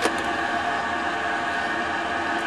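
A steady hum made of several constant tones, unchanging throughout.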